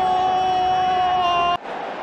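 A football commentator's drawn-out shout, one long held note after the goal. It is cut off abruptly about one and a half seconds in.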